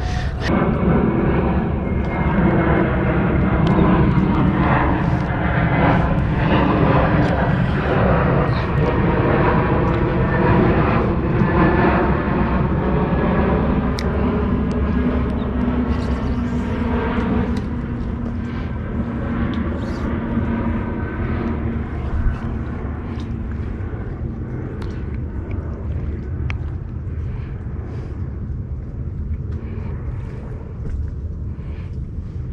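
A loud engine drone with several steady tones, strongest in the first half and fading away after about 18 s.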